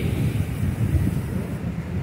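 Wind buffeting the phone's microphone: an uneven low rumble that swells and falls in gusts.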